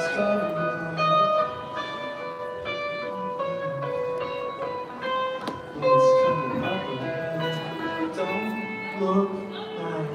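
A guitar playing a run of plucked single notes, one after another, each note ringing briefly and fading.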